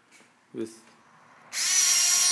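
Cordless drill starting up suddenly about one and a half seconds in and running at a steady high speed.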